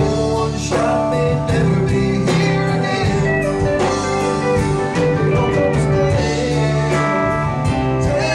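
Live country-blues band playing an instrumental section, with electric guitar over bass and held keyboard chords.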